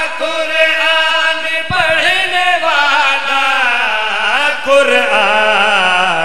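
Male voices chanting a devotional qasida, drawing out long melodic notes that glide and waver.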